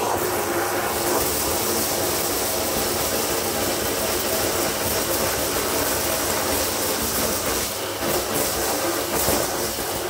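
Philips PowerCyclone 4 XB2140 bagless canister vacuum, 850 W motor, running steadily with the crevice nozzle on the hose, sucking debris out of a thick shag carpet: a loud, even motor whine and rush of air.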